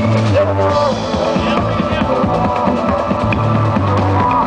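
Live drum-and-bass music, loud and continuous: an acoustic drum kit played busily over an electronic backing track with heavy bass.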